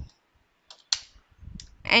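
A few separate computer keyboard keystrokes, sharp clicks after a short silence, as text is typed into an editor.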